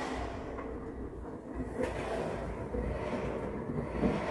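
Front-loading washing machine with an inverter motor, its drum turning a load of wet clothes before it speeds up into the fast spin: a steady low rumble.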